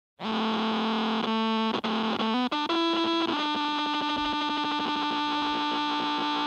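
Instrumental song intro on distorted, effects-laden electric guitar. A sustained note starts abruptly, steps through several pitches over the first three seconds, then holds one note.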